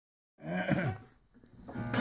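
A brief voice sound, then a small acoustic guitar being strummed, starting loudly right at the end.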